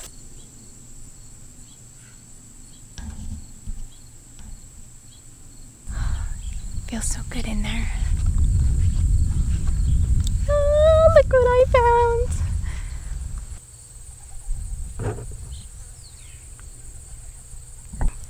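Insects, crickets by the tags, keep up a steady high-pitched drone. A loud low rumble swells in the middle, and near its end comes a brief pitched, voice-like sound.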